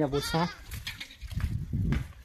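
A young goat bleating: two short, wavering bleats in the first half-second, followed by a low rumble near the end.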